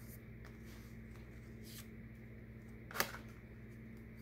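Oracle cards being handled and set on a wooden card stand: a faint brush of card partway through and a single sharp click about three seconds in, over a steady low hum.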